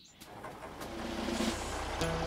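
A work vehicle's engine running at idle, a low, evenly pulsing rumble that swells up over the first second.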